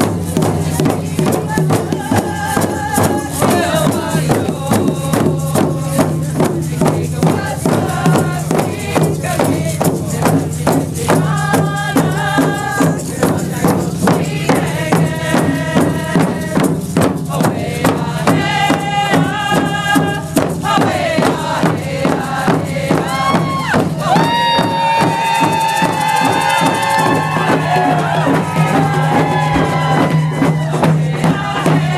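Several hand-held frame drums beaten together in a steady, even beat, with voices singing a chanted song over them. Near the end a high voice rises and holds a long call.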